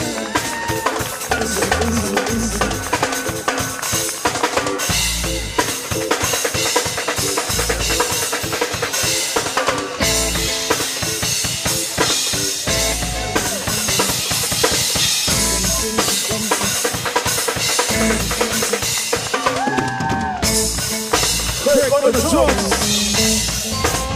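Live reggae band playing an instrumental passage, with the drum kit to the fore: snare rimshots and bass drum in a steady rhythm over bass guitar and electric guitar. Near the end a voice comes in briefly.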